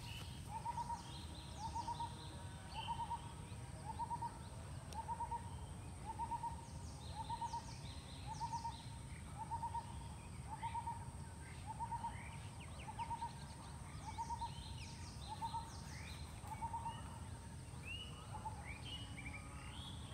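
A bird repeating one short note about once a second in a steady, even rhythm, with other birds chirping higher in the background over a low steady rumble.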